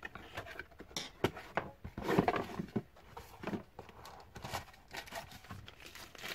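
Hands handling cardboard packaging and a wrapped device: scattered scrapes, taps and rustles of cardboard and wrapping, loudest about two seconds in.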